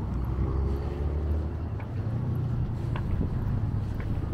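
Outdoor street ambience: a steady low rumble of road traffic, with a passing vehicle's engine note heard in the first couple of seconds.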